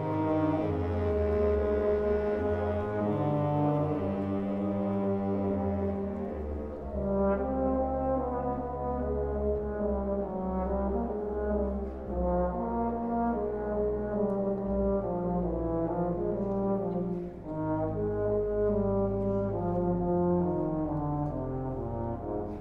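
Wind ensemble playing long held chords over sustained low notes, without a steady beat.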